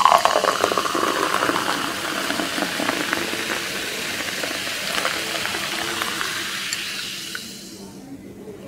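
Carbonated soft drink poured from an aluminium can into a glass tumbler: a steady fizzing, splashing pour that thins out and fades away near the end.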